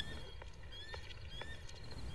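Faint night-time ambience from the film's soundtrack: short rising chirps repeating about twice a second over a low hum, like small night creatures calling.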